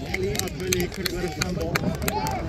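Sideline spectators' voices, talking and calling out indistinctly, with a few short sharp ticks scattered through.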